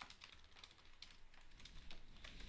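Faint typing on a computer keyboard: a run of quick, irregular key clicks as a sentence is typed.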